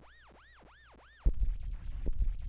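Very quiet for about a second, then a drum-machine kick sample played far below its root key sets in as a sudden, deep, muddy rumble: pitched down so far that it just sounds like a muddled sound.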